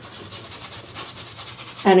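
Paintbrush bristles rubbing acrylic paint onto a stretched canvas: a soft, scratchy brushing in quick repeated strokes.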